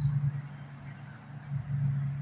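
A steady low hum under faint background noise, with no distinct call or event standing out.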